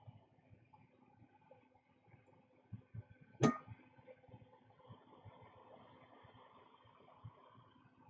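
Faint steady fan hum from workbench equipment, with scattered soft ticks and taps of small tools being handled. The hum grows a little stronger about halfway through.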